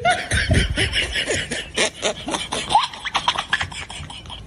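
Someone laughing and snickering in short pitched bursts, with quick clicking sounds throughout.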